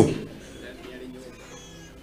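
The tail of a man's drawn-out, pitch-sliding call through a microphone, fading out in the hall's echo within about half a second, followed by low steady room noise.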